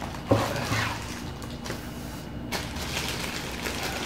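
Handling noise as a plastic-wrapped camera tripod is slid out of its nylon carry bag: a sharp knock about a third of a second in, then faint rustling and shuffling.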